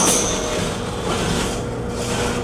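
Beetleweight combat robot's spinning weapon running, a steady mechanical whir.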